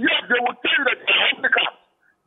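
A man speaking over a telephone line, with the thin, narrow sound of a phone call, pausing briefly at the end.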